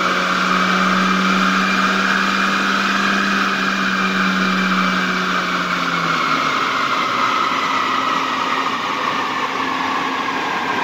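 Chevrolet Cruze engine on a chassis dynamometer, held at about 5,500 rpm at the top of a full-throttle power pull. About six seconds in the load comes off and the engine and rollers wind down, the pitch slowly falling.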